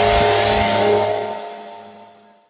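Intro sting: a whooshing sweep settling into a held chord that fades away from about a second in.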